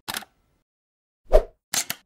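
Logo-animation sound effects: a short tick, then a loud pop about one and a half seconds in, followed by two quick bright clicks near the end.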